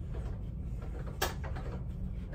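A single short click about a second in as the motorcycle windscreen is handled on its mount, over a steady low hum.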